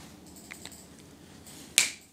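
A sharp click near the end, preceded by two faint ticks about half a second in: small hard objects being handled.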